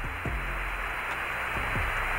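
Radio static hiss on a space-to-ground voice channel between transmissions, band-limited like a radio link, with a steady low hum under it.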